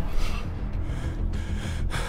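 A man gasping, with a few sharp noisy breaths about half a second apart, reacting to the burn of a very hot wing. Low background music runs underneath.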